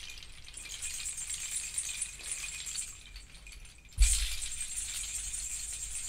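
Hand-held bundle rattle of dried natural pieces shaken in a continuous clattering rustle, with a sharper, louder shake about four seconds in and rattling that carries on after it.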